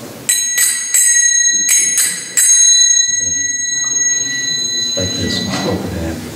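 Pair of kartals, small brass hand cymbals, struck in two quick groups of three in the first two and a half seconds. Each stroke gives a bright, high ring, and the ringing carries on, fading out about five seconds in.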